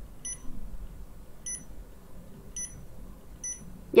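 Touch-key beeps from an energy recovery ventilator's wall controller: four short high beeps about a second apart, one for each press of the MODE key as it steps through the display screens.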